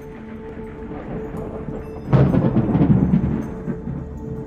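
Cinematic soundtrack music: a sustained ambient chord, then about halfway in a sudden loud, deep boom hit that rumbles for over a second before fading back into the drone.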